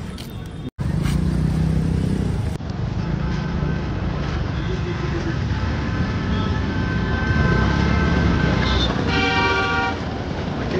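Road traffic: a steady low rumble of car engines in busy street traffic, with a car horn sounding for about a second near the end.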